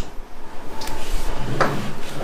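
Camera handling noise on a wooden table: a sharp knock, then rubbing and scraping, with a second sharp knock about a second and a half in.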